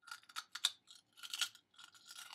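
A person biting and chewing Wheat Thin crackers: a quick, irregular run of dry crunches.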